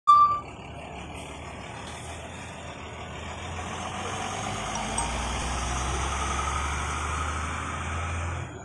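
A short high beep at the very start, then steady outdoor background noise with a motor vehicle's low engine rumble that grows louder through the second half.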